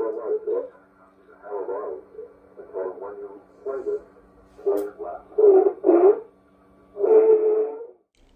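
Thin, narrow-band radio broadcast voice coming from a loudspeaker, in short phrases with a steady hum underneath.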